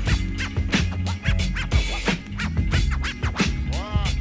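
Hip hop beat played from vinyl with turntable scratching over it: the record worked back and forth under the needle, giving quick rising-and-falling squiggles, with one run of them about a second and a half in and another near the end.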